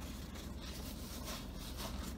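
Faint rustling of a paper napkin being unfolded and rubbed between the hands, over a low steady hum.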